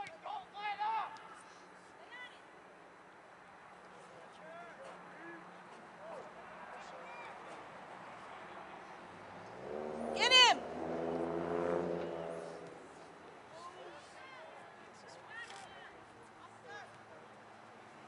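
Scattered distant shouts from players and spectators across an outdoor soccer field, with a short call just after the start and one loud high yell about ten seconds in. Around the same time a motor vehicle's engine hum rises and fades over about three seconds.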